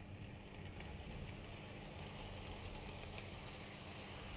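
Faint, steady running of a 00 gauge model steam locomotive and its train of wagons passing close by: a low electric motor hum and the wheels rolling on the track.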